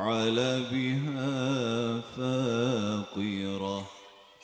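A man's solo voice reciting the Qur'an in a melodic, ornamented chant into a microphone. He holds long wavering notes with two brief breaks and stops just before the end.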